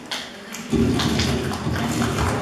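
Rustling and knocking handling noise close to a handheld microphone as flowers are taken and held against it. It starts suddenly about two-thirds of a second in and runs on unevenly.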